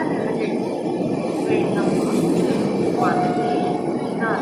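Passenger train coaches rolling past at speed close by: a steady, dense rumble and rattle of wheels on the track.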